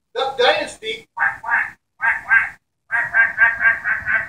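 Imitation duck quacking: after a short voice-like burst, two pairs of quacks, then a quick run of about five quacks near the end.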